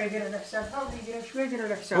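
Quiet talking voice, with no other sound standing out.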